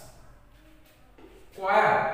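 A man speaking in a classroom explanation: his voice trails off at the start, pauses for about a second and a half, then resumes near the end.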